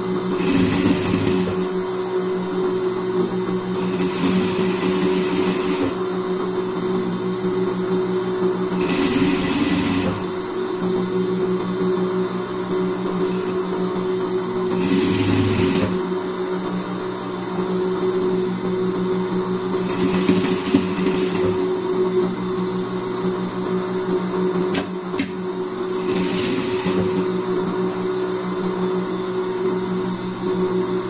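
Industrial straight-stitch sewing machine stitching in six short runs of a second or two each, with a steady hum underneath.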